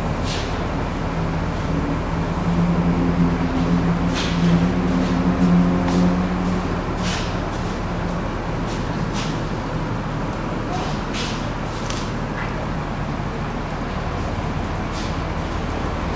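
Car engine running inside an enclosed car wash garage over a steady mechanical background noise, with short hissing bursts now and then.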